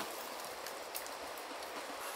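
Steady rushing of a trout stream's flowing water, an even hiss with no pauses.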